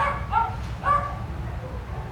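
A small dog barking three short, high-pitched barks in about a second, over a steady low hum.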